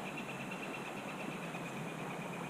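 A steady high-pitched pulsing trill from an unseen calling animal, over a low outdoor hiss. It fades near the end.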